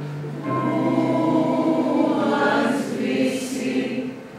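A vocal group singing a Greek song together to piano accompaniment. A new sung phrase comes in about half a second in, louder than the held chord before it.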